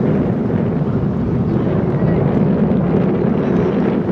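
Wind buffeting the camera microphone, a steady low rumble, with a murmur of crowd voices beneath it.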